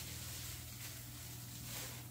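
Quiet room with a steady low hum and a faint, soft rustle of plastic packaging being handled.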